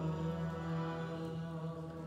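Harmonium holding a steady sustained chord that slowly fades as the kirtan hymn ends.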